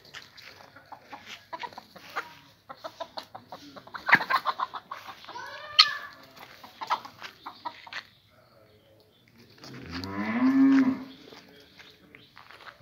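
A farm animal gives one long, low call near the end. Before it comes a run of short, rapid clicks and chattering calls.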